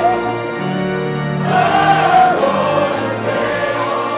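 Church choir singing in long held notes, with a slight waver on the top line.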